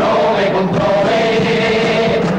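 A chirigota chorus of many voices singing together in unison, holding long notes.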